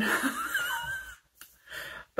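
A woman's breathy, wheezy laugh with a thin, high wavering note, dying away after about a second.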